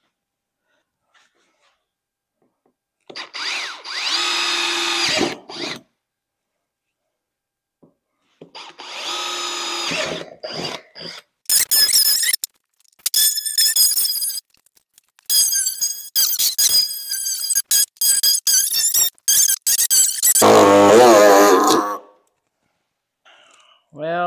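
A power drill runs twice for a few seconds, boring a pilot hole through the golf cart's plastic front body. Then a power tool cuts the plastic in many short, choppy bursts, and near the end comes one last, lower-pitched run.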